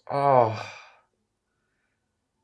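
A man's exasperated, voiced sigh or groan, about a second long, loud at first and trailing off.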